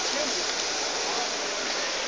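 A steady, even rushing noise, like running water, with no distinct events.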